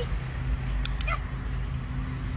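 A dog-training clicker clicked once, a quick two-part click, a little under a second in as the golden retriever puppy reaches the hand target: the marker for the right response. Just after it comes a brief high whine from a puppy, over a steady low background rumble.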